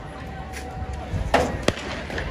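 Two sharp knocks about a third of a second apart, the first louder, over outdoor background chatter.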